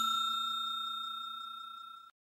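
Bell-chime sound effect of a subscribe-button animation ringing out: a few clear steady tones fading away evenly.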